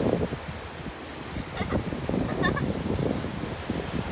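Small waves breaking and washing up a sandy beach, a steady surging rush, with wind buffeting the microphone. Two faint short sounds come through about a second and a half and two and a half seconds in.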